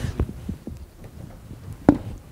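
A few soft, irregular low thumps, with one sharper, louder knock just before the end.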